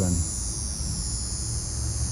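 Steady outdoor background of a continuous high-pitched insect drone, like crickets or cicadas, over a low steady rumble.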